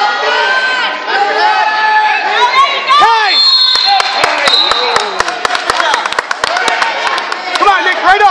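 Spectators in a gymnasium shouting and cheering during a wrestling bout, many voices at once. About halfway in come a brief steady high tone and a quick run of sharp smacks.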